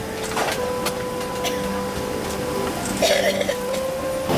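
Airliner cabin during boarding: a steady hum with the murmur of passengers' voices, scattered clicks and knocks, and a brief rustle about three seconds in.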